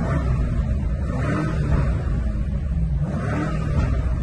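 BMW M5 F90's twin-turbo V8 running on its stock exhaust in M2 mode as the car drives off, the engine note rising and falling twice with the throttle.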